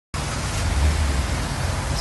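Wind buffeting the microphone outdoors: a steady hiss with a low rumble that swells a little under a second in.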